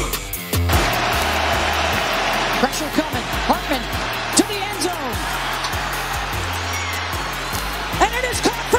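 Background music over a steady stadium crowd roar, with cheering voices rising and falling from about three seconds in.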